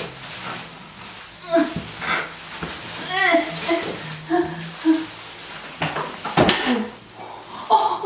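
A woman making short, wordless vocal sounds of effort while straining to get up out of an armchair, bound in many layers of cling wrap. About six and a half seconds in there is a thump, which those present take for her knocking against the wall.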